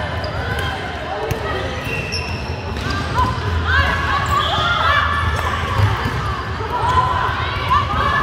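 Indoor volleyball rally on a hardwood court: many short sneaker squeaks, thumps of the ball being struck, and players' shouts, echoing in a large hall. The squeaks and calls grow busier from about three seconds in.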